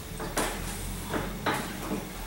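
A few short knocks and clunks as a three-headed rotary polisher head is handled and set on a wooden workbench.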